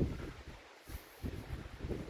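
Wind buffeting the camera's microphone in gusts, a low rumble that dies almost away about a second in and then picks up again.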